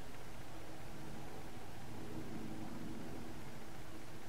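Steady background hiss with a faint low hum and no distinct events: room tone.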